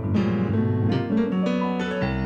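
Solo jazz piano played live: quick runs of notes and chords over sustained low bass notes.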